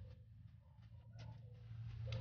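Near silence, with a few faint ticks of a wire whisk against a plastic mixing bowl as eggs are beaten into the batter.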